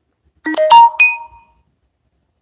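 A short electronic chime, a few quick notes rising in pitch and lasting about a second, like a notification tone.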